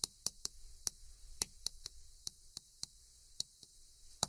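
Chalk tapping against a blackboard as characters are written: a string of short, sharp clicks at an irregular pace, about three a second.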